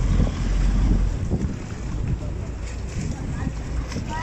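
Wind buffeting the microphone, a heavy low rumble for about the first second that then eases into a steadier rushing noise.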